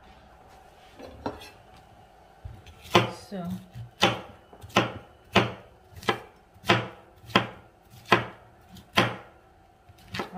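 Kitchen knife chopping cauliflower on a wooden cutting board: after a quiet start, about ten sharp chops, roughly one every two-thirds of a second.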